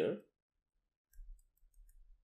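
Faint clicks and taps of a stylus on a tablet screen while drawing, over a low bumping of handling noise, starting about halfway through.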